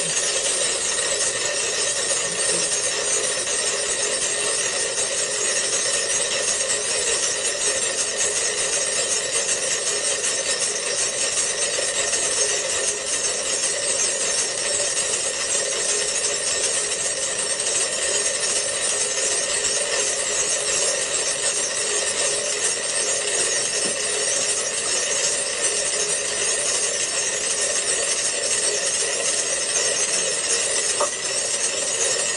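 Dozens of metronomes set at different speeds ticking at once, played through a laptop's small speaker: a dense, steady clatter of overlapping clicks.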